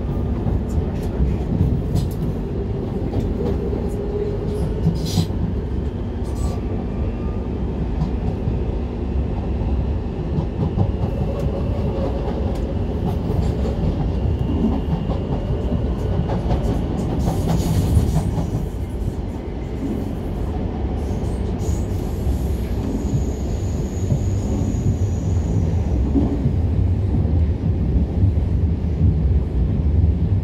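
Passenger train running, heard from inside the carriage: a steady low rumble with a few faint clicks from the rails.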